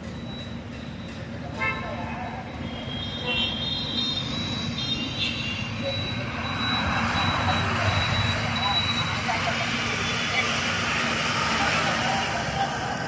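Outdoor background noise of road traffic: a steady low rumble, with a passing vehicle's hiss swelling from about halfway through.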